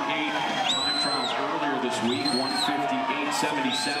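Spectators cheering and shouting from poolside stands during a swimming race, many voices overlapping. A high whistle-like note rises, holds and falls roughly every second and a third.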